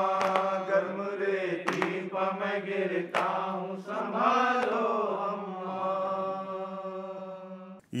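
A group of men chanting a noha, a mourning lament, in unison, their voices stretched into long held lines. Sharp chest-beating slaps (matam) land about every second and a half through the first half. The chant ends on a long held note that fades out near the end.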